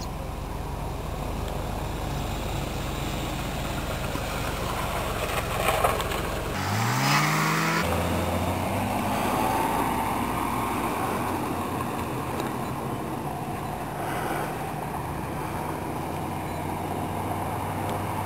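Low, steady drone of the DC-3's twin radial piston engines running at low power on the runway. About seven seconds in, a car engine revs up, rising in pitch, then runs steadily as the car drives across the apron.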